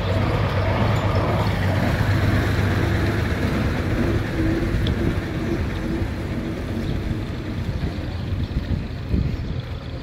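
A motor vehicle's engine running steadily at a low, even pitch, easing off near the end.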